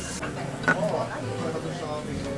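Indistinct background chatter of diners in a small restaurant, with a short tap about a third of the way in.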